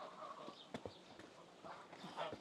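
Faint footsteps on a stone path and steps, a few scattered sharp taps over quiet outdoor background.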